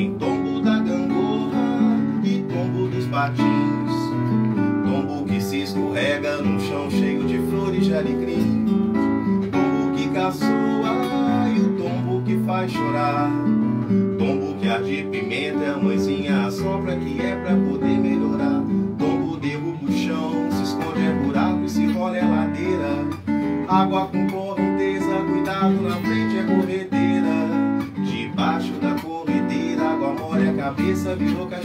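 Acoustic guitar playing an instrumental passage of a song, a steady run of plucked notes and strummed chords.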